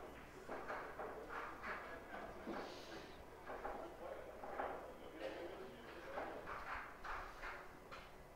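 Indistinct voices talking in the background at a low level, with no clear words.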